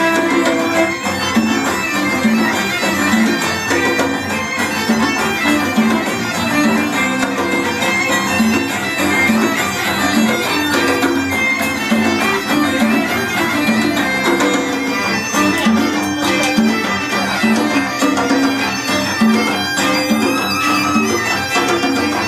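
Live fusion band playing an instrumental piece, with violin to the fore over electric guitar, saxophone, trumpet and congas.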